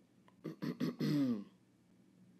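A man's short wordless vocal sound, most like a throat clear: a few quick pitched pulses about half a second in, then a longer one falling in pitch.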